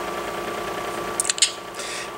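Steady room noise, a hiss with a faint hum under it, and a few soft clicks a little past the middle.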